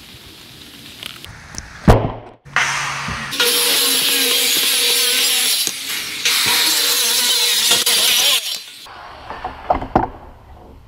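Corded handheld power tool running over the boards of a wooden pallet: a steady motor hum under loud cutting noise for about five seconds, dipping briefly in the middle, then stopping suddenly. A loud knock comes about two seconds in, and a few lighter knocks near the end.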